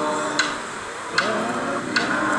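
A group singing a chant-like song, kept in time by wooden clapsticks struck about once every 0.8 seconds, three strikes here. The voices drop lower in the middle before the beat carries on.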